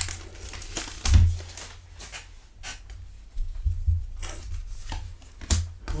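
Plastic trading-card pack wrapper being torn open and crinkled by hand, with scattered crackles and a few dull thumps from hands handling the pack.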